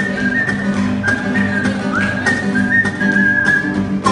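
A person whistling a melody, a thin high tune with short sliding notes, over a strummed acoustic guitar.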